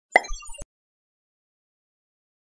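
A short cartoon-style 'plop' sound effect: a sharp pop followed by a few quick notes stepping down in pitch, lasting about half a second at the start.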